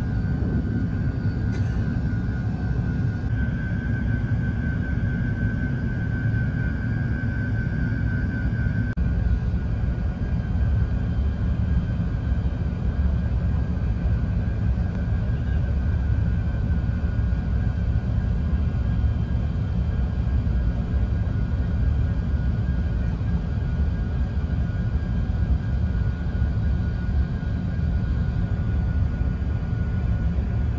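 Inside an Airbus A380's cabin during the landing phase: a steady low rumble of engines and airflow with a thin constant whine above it. The whine and part of the rumble drop a little about nine seconds in.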